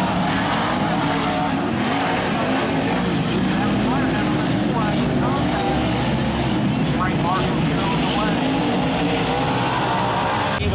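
Dirt-track open-wheel modified race cars' V8 engines running at speed around the oval, a continuous loud engine note that rises and falls as the cars go through the turns.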